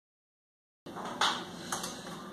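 Dead silence for nearly a second, then small handling noises as twine is tied around a burlap-wrapped aluminium foil cake tray: one sharp rustle or click just over a second in and two lighter ones shortly after.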